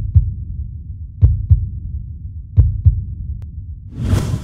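Sound effect for an animated logo intro: three pairs of deep bass thumps in a heartbeat rhythm, a pair about every 1.3 seconds, over a low rumble, with a whoosh swelling up near the end.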